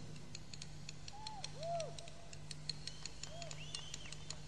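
A quiet pause in the music: a faint steady low hum with faint ticks throughout, and a few short rising-and-falling whistled notes, the first about a second in.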